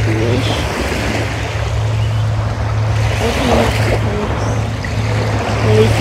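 Steady outdoor noise of calm sea surf and wind on the microphone, with a constant low hum underneath.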